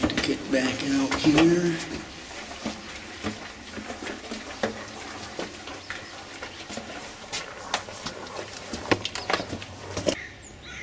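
Footsteps on a gritty stone floor in a small rock-cut chamber, a run of irregular scuffs and clicks. A voice is heard in the first two seconds.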